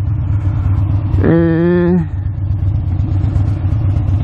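Harley-Davidson V-twin motorcycle engine running steadily at low revs, heard from on board the bike. About a second in, the rider gives a short drawn-out "eee" over it.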